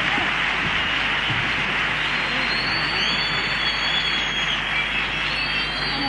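Theatre audience applauding and cheering, with high whistles heard over the clapping from about two seconds in.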